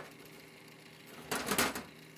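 A quarter-inch cable plug is pushed into a small mixer's input jack, giving a short cluster of clicks and rattles about a second and a half in. Before it there is only a faint steady hum.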